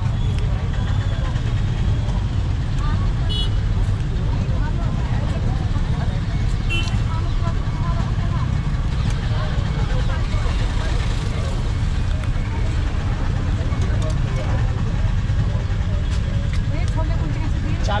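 Steady low rumble of street noise with indistinct background voices, and a couple of light metallic clicks about three and seven seconds in.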